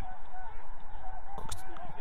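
Outdoor ambience with wind noise on the microphone and a run of short honking calls. A single spoken word comes about a second and a half in.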